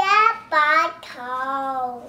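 A toddler's high voice singing three drawn-out notes, each lower than the last; the third and longest is held for almost a second.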